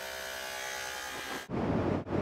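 Corded electric hair clippers buzzing steadily for about a second and a half, then cut off abruptly by a louder, fluctuating rushing noise.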